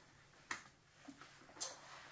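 Boot laces being loosened on a tall lace-up boot: a single click about half a second in and a short rustle a little past one and a half seconds.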